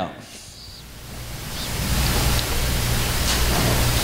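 Steady hiss with a low electrical hum, swelling up over the first two seconds and then holding steady: background noise of the sound system or recording in a pause between words.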